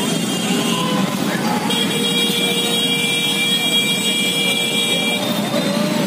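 Many motorcycles riding together in a rally: steady engine and road noise. A horn sounds from about two seconds in and is held for roughly three seconds.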